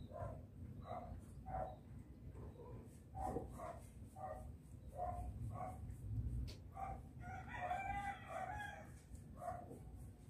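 Faint animal calls: short pitched notes repeat about twice a second, and a longer wavering call lasts about a second and a half near the end, over a low rumble.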